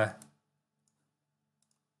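A few faint computer mouse clicks over near silence.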